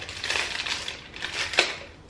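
Plastic biscuit wrapper crinkling and crackling as it is handled, with a sharp crackle about one and a half seconds in.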